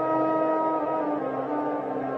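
Background music of slow, sustained held notes, the chord shifting about a second in.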